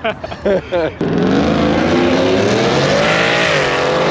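Brief laughter, then a drag-racing car's engine at full throttle going down the strip, its pitch climbing for about two seconds, dipping briefly, then holding steady.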